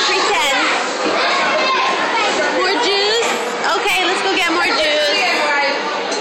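Indistinct chatter of many voices, children's among them, in a busy indoor room.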